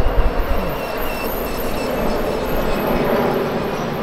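Street traffic noise as a stretch Ford Edge limousine drives past: a steady rush of engine and tyre noise at an even level.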